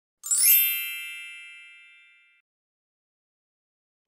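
A single bright electronic chime sounding once, with a quick shimmering rise into a ringing chord of many overtones that fades away over about two seconds.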